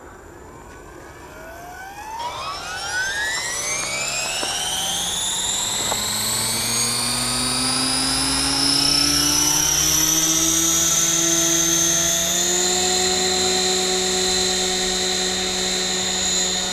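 Align T-Rex 550 electric RC helicopter spooling up: the motor and rotor whine rises steadily in pitch and grows louder for several seconds, then holds a steady high whine, with a small step up in pitch later on.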